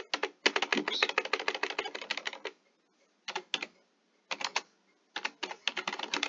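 Typing on a computer keyboard in bursts: a quick run of keystrokes, a couple of short groups of taps with pauses between, then another fast run near the end, as a line of text is typed and corrected.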